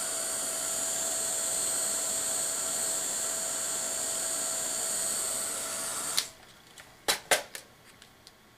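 Craft heat gun (embossing heat tool) running steadily, a hiss of blown air with a high whine, used to resoften Friendly Plastic thermoplastic; it cuts off suddenly about six seconds in. A few sharp knocks follow about a second later.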